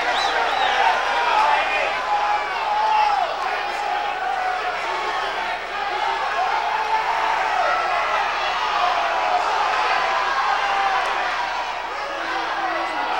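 Boxing crowd shouting and yelling, many voices overlapping without a break.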